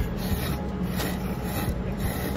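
Ramen noodles being slurped from a bowl: a run of airy, noisy sucking sounds over a steady low room hum.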